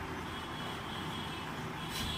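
Steady background noise: an even low rumble and hiss with no distinct events.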